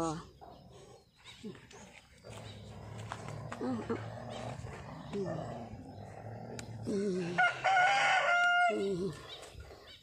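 A rooster crowing once, about seven and a half seconds in: one long call held on a steady pitch that drops briefly before it ends.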